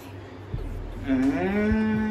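A person's voice held on one long drawn-out note, starting about a second in and lasting about a second and a half.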